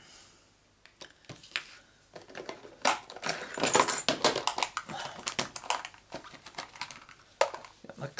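Rapid rustling and clicking as craft supplies are handled and rummaged through on the work desk, lasting a few seconds from about three seconds in.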